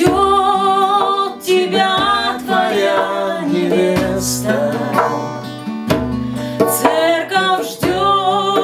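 A woman singing, with a man singing along, over a strummed acoustic guitar and a hand-played djembe.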